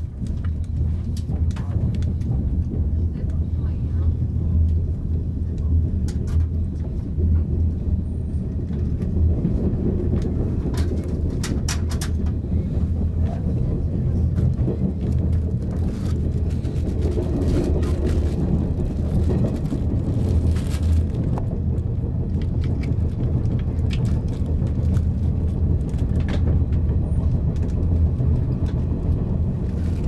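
JR West 485 series electric limited-express train running, heard from the driver's cab: a steady low rumble of the motors and wheels on the rails. Several sharp clicks stand out as the wheels cross rail joints and points.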